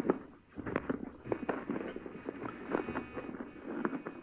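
Writing on a board during a lecture: a quick, irregular run of small taps and scratches.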